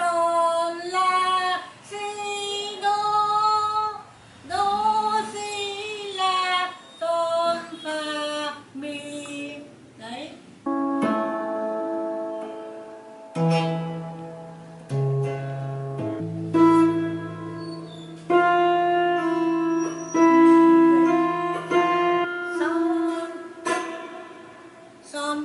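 A woman sings a short melody for about the first ten seconds. An electric lap steel (Hawaiian) guitar then takes over, its plucked notes held and ringing one after another.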